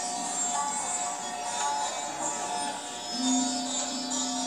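Recorded instrumental music playing back from a museum listening station, with long held notes over a steady drone.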